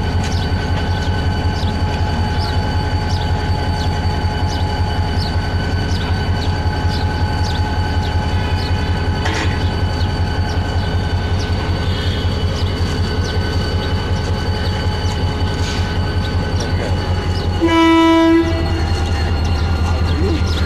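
Diesel locomotive's engine running with a steady, pulsing low rumble, then one short horn blast of about a second near the end.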